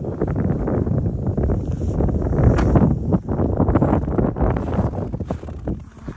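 Wind buffeting the microphone: a loud, steady, low rumble that drops away near the end.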